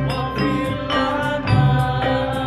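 Men singing a devotional chant together, with a lead voice holding long notes, accompanied by frame drums (rebana) struck in a steady beat of about two strokes a second.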